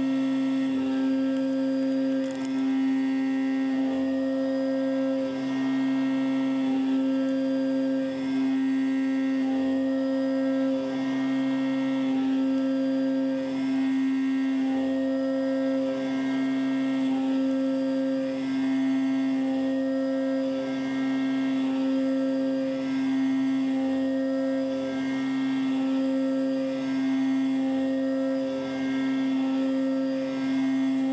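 MR-1 CNC mill's spindle running with an end mill cutting an aluminium block under coolant spray: a steady machine whine with overtones, and a higher tone that comes and goes about every two seconds as the cut engages.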